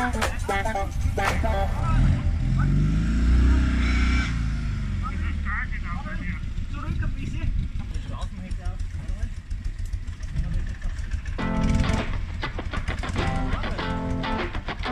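An off-road vehicle's engine revving up and falling back about two seconds in, over background music and voices.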